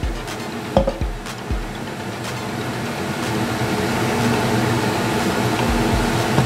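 A pot of beef stew heating on the stove: a steady hiss over a low hum, growing slowly louder, with a few light clicks in the first two seconds.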